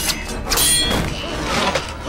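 Movie sword-fight soundtrack: background music with a few sharp hits and thuds in the first second.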